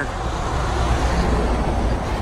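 Road traffic passing close by: a steady rushing noise with a low rumble underneath.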